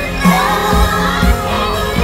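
Live concert music: a woman singing a held, gliding vocal line over band accompaniment with regular bass and drum beats, as heard from the audience.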